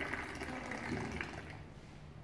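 Tea poured in a thin stream from a metal teapot held high into a small glass, a soft splashing trickle as the glass fills, fading as the pour ends.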